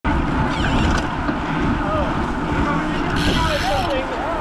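Wind rumbling on a bike-mounted camera's microphone while riding in a group of road cyclists, with faint voices of other riders and a brief hiss about three seconds in.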